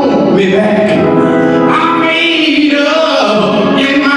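Gospel singing led by a man's voice on a microphone, with long held notes.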